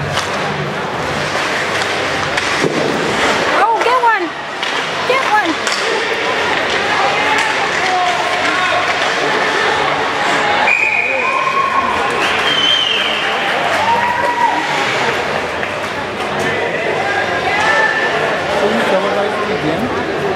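Spectators in an ice rink talking and calling out over the noise of a hockey game, with sharp knocks of play around four seconds in. A shrill held whistle sounds about eleven seconds in, typical of a referee stopping play.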